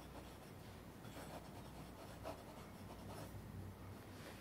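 A fountain pen's broad 1.5 mm nib scratching faintly across paper in a series of short pen strokes, over a low steady hum.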